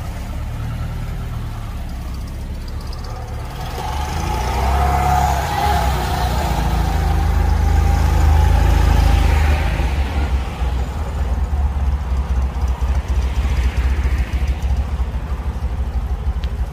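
Classic car engine running with a low rumble, growing louder over several seconds and easing off a little after about ten seconds.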